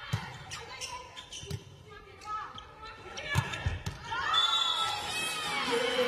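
Volleyball being struck during a rally: a hit near the start, another about a second and a half later, then two hits in quick succession around the middle. From about four seconds in, shouts and cheering rise and stay loud as the point is won.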